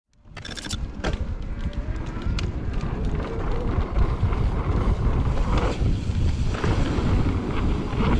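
Wind buffeting the action-camera microphone as a Specialized Turbo Levo electric mountain bike rolls fast down a dirt trail, with a low rumble and light clicks and rattles from the bike over the ground and a few sharp ticks in the first seconds.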